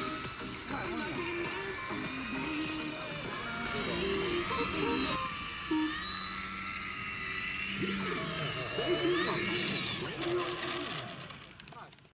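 Radio-controlled aerobatic model airplane's motor and propeller whining, the pitch rising and falling as the throttle changes through the manoeuvres. It fades out in the last second, with voices talking underneath.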